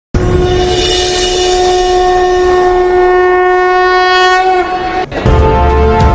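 A single long horn-like blast held for about four and a half seconds, sagging slightly in pitch as it ends. About five seconds in, intro music with a heavy bass comes in.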